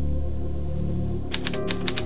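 A low, steady music drone, joined about a second and a half in by a quick run of typewriter keystrokes clacking.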